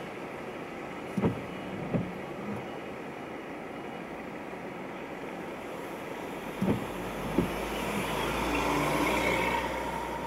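Road traffic heard from inside a car stopped in traffic on a wet road: a steady hum with a few short dull thumps, then the rumble and tyre hiss of vehicles passing close alongside, a bus among them, swelling over the last couple of seconds.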